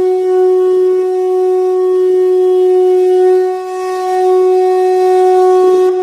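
A conch shell (shankh) blown in one long, steady note that dips briefly a little past halfway and then swells again.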